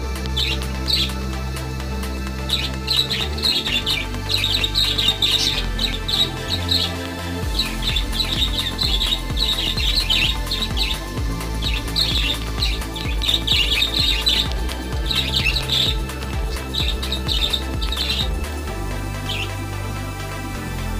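Background music with sustained low notes, with small cage birds chirping in quick clusters over it.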